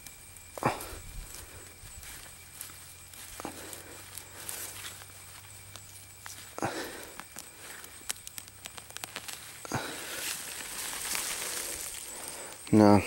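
Leaves rustling with scattered soft crackles as a hand works down through oats and brassica foliage and pulls a young turnip plant up by its roots.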